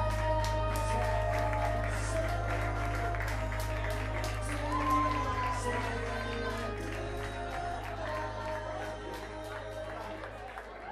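Karaoke track playing with long held melody notes, slowly getting quieter toward the end, with scattered clapping from the audience.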